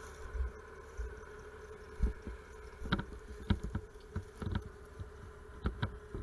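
Franklin cable skidder's diesel engine running with a steady drone. Irregular knocks and clanks come from the machine jolting over rough ground, several close together in the second half.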